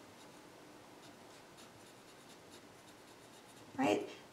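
Pen writing on paper: faint, short strokes.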